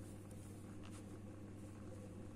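Faint room tone with a steady low electrical hum, and a brief soft rustle of the paper sheet about a second in.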